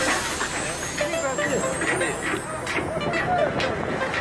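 Men's voices calling out over the steady running noise of a fishing boat's machinery.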